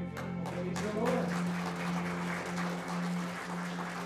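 Congregation applauding as a song ends, the singing cutting off right at the start, with a steady low tone sounding underneath.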